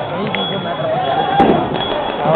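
People talking, with a single sharp crack about one and a half seconds in.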